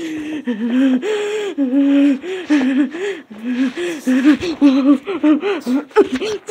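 A child's voice making a string of wordless, drawn-out vocal sounds that slide up and down in pitch, with short breaks between them.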